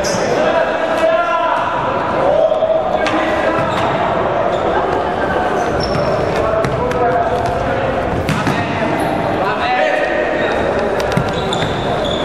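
Indoor futsal game in an echoing sports hall: players shouting and calling, the ball thudding off feet and floor, and short squeaks of shoes on the wooden court.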